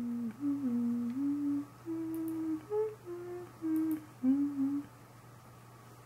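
A person humming a short tune of about nine held notes that step up and down in pitch, stopping about five seconds in.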